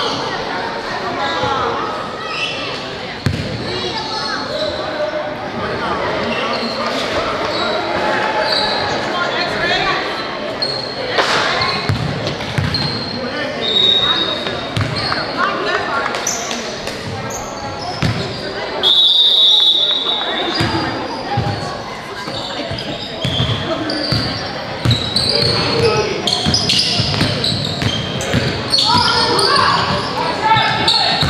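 Basketball game sounds echoing in a large gym: a ball dribbling on the court, with voices calling out throughout. About two-thirds of the way through, a high whistle blows once for about a second.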